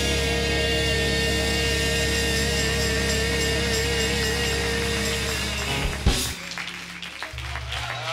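A youth choir and church band holding a long final note with vibrato, ending with a drum and cymbal hit about six seconds in. Scattered applause follows under a low sustained organ tone.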